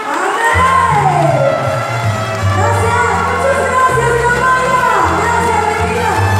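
A woman singing into a microphone over backing music with a strong, steady bass line. About a second in, her voice slides down through a long falling note.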